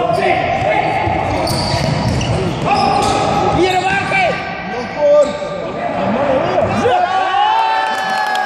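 Futsal players' shoes squeaking on a hardwood sports-hall floor as they run and turn, with the ball being kicked and thudding and players shouting, echoing in the large hall. A loud sharp thud comes about five seconds in.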